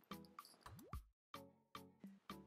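Very faint background music, near silence, with a few short, soft notes and one quick upward-gliding note about a second in.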